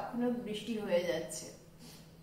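A woman talking for about the first second and a half, then a short pause.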